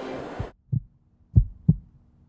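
Deep, short thumps in a heartbeat rhythm: one thump, then a pair about a third of a second apart, over a faint low hum.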